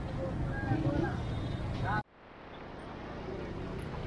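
Busy street-market ambience: crowd voices over a steady traffic noise. About halfway through the sound cuts out suddenly and fades back up to the same street noise.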